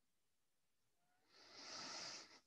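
Near silence, then a short, high hiss swells in about halfway through and is loudest near the end.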